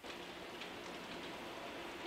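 Steady, even hiss with a faint low hum beneath it, cutting in suddenly at the start.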